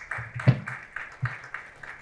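Hand clapping from a small group, irregular claps a few times a second, with a single louder thump about half a second in.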